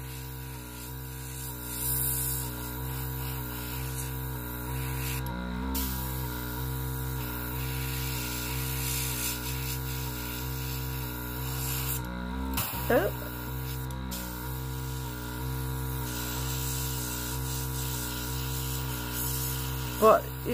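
Airbrush spraying nail alcohol ink, its compressor set to high: a steady hiss of air over a low hum, cutting out briefly a few times.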